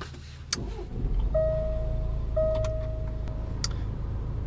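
Range Rover Evoque's Ingenium 2.0-litre four-cylinder diesel being started, with a click about half a second in, then settling into a steady idle. Two electronic chime tones from the car, each about a second long, sound over the idle.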